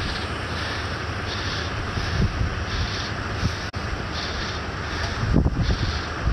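A vehicle engine running steadily under a rushing noise while a car is dragged backward by a chain hooked to its wheel.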